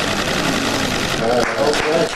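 A small group clapping, a dense, steady patter of applause, with a voice briefly over it near the end.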